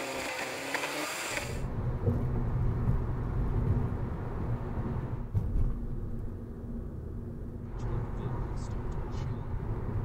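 Steady road noise heard from inside a car cruising on a freeway: a low rumble of tyres and engine. The sound changes abruptly about a second and a half in, from a thinner hiss to a heavier rumble, and a few light clicks come near the end.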